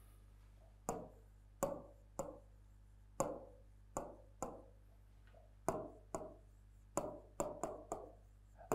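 Stylus pen tapping against the glass of an interactive touchscreen board while handwriting a word: about a dozen short, irregular taps.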